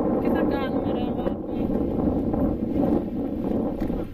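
Wind buffeting the microphone: a steady, loud low rush with no let-up. A voice speaks briefly in the first second.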